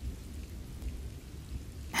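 Steady rain falling, a rain ambience track, with a low rumble underneath.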